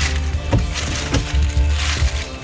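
Handling noise from a handheld camera moving around a car interior: a low rumble with two short knocks, about half a second and a little over a second in, with music playing faintly underneath.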